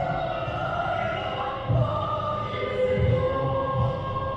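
A national anthem sung by a choir with accompaniment, in slow, held phrases.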